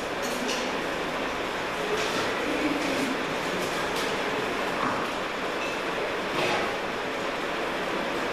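Steady background noise, with a few faint clicks.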